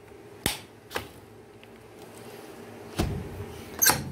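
Aluminium side window of a 1996 Blue Bird school bus being worked by its red latch bar: short sharp metal clicks and knocks as the latch is lifted and the sash moved. There are two light clicks about half a second and one second in, a heavier knock about three seconds in, and another click just before the end.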